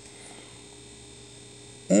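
Faint, steady electrical hum in a quiet room, with no distinct events.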